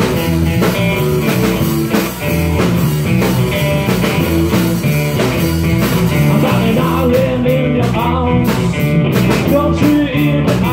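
Live rock band playing loud, amplified electric guitar, bass guitar and a drum kit, with a steady beat.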